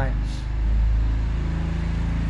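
A motor engine running with a low, steady hum.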